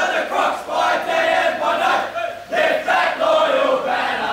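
A team of footballers singing their club song together in loud unison, with a brief pause about two and a half seconds in.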